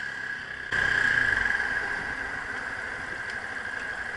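Yamaha motorcycle engine idling steadily, with a steady high whine over it. About a second in, the sound grows louder with a low rumble, then eases back down.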